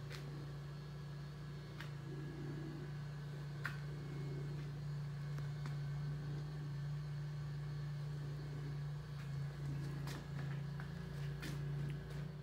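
Steady low hum of workshop room tone, with a few faint clicks scattered through it.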